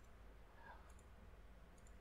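Near silence: a faint steady low hum with a few very faint clicks from editing on the computer.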